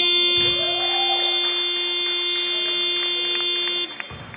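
Basketball scoreboard buzzer sounding one long, steady blast of about four seconds that starts and cuts off abruptly, signalling a stoppage in play.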